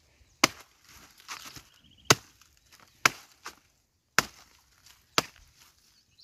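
A blade chopping a felled banana plant's trunk into pieces: five sharp chops, about a second apart.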